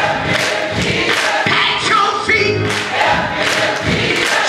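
Church choir singing, many voices together at a steady level.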